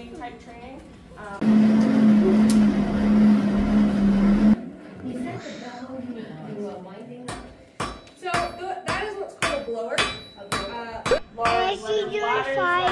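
A blacksmith's forge blower runs for about three seconds with a loud, steady rush and hum, blowing the fire to heat the iron. Then a hand hammer strikes hot iron on the anvil, about three ringing blows a second through the last five seconds.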